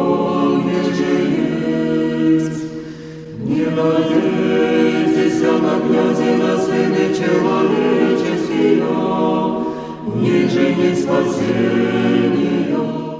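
A church choir singing unaccompanied chant in held chords, in long phrases with short breaks about three seconds in and again about ten seconds in.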